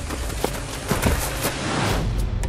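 Hurried running footsteps scuffing and crunching on a gravel path, with a few sharp knocks.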